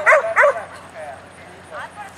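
Dog barking as it runs: a quick burst of three loud, high barks in the first half second, then a few fainter barks.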